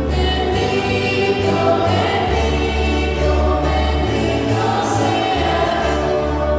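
A choir singing a hymn over steady low accompanying notes that shift every second or two.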